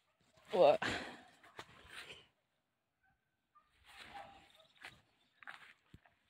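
A short voice-like call, falling in pitch, about half a second in, then faint rustling.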